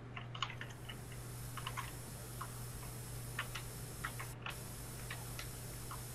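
Faint, irregular light clicks, several a second at times, over a steady low hum.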